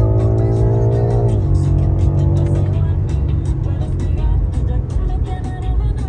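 BMW M5 Competition's twin-turbo V8 under full-throttle acceleration, heard from inside the cabin. The revs climb, then drop sharply at an upshift about a second and a half in, and the engine keeps pulling at lower pitch. Music plays along with it.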